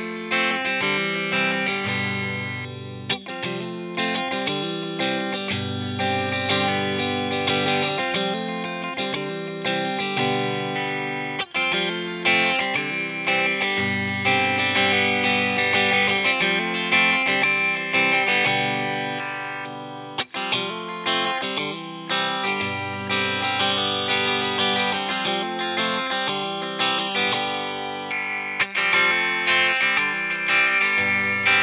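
G&L Tribute Series Legacy electric guitar played through an amplifier: chords and picked lines with a few brief breaks. It is played first on the neck single-coil pickup alone, then on the middle pickup alone.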